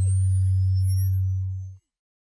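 Synthesized transition sound effect for an animated TV logo: a loud, steady low hum that cuts off suddenly shortly before the end, with faint rising and falling pitch sweeps over it.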